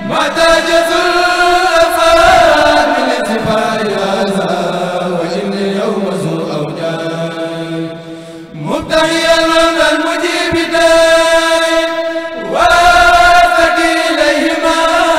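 A Mouride kourel, a group of male voices, chanting an Arabic khassida in unison through microphones, unaccompanied, in long drawn-out melismatic notes. The chant dips about eight seconds in, then swoops up into a new phrase, and swoops up again near the end.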